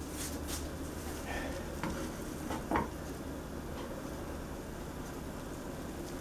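An egg frying in a Slip Stone nonstick frying pan, sizzling quietly over a steady low hum. A couple of light clicks come about one and a half and three seconds in.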